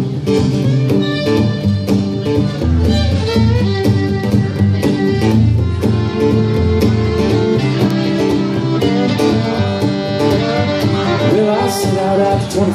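Live fiddle and strummed acoustic guitar playing the instrumental intro of a country song, the fiddle carrying the melody over a steady strumming rhythm.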